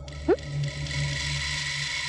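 Tense background music: a low sustained drone under a high shimmering swell, with a brief rising swoop near the start.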